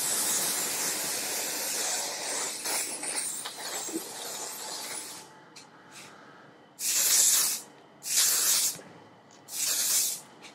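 Aerosol can of hairspray spraying: one long spray of about five seconds, then three short bursts.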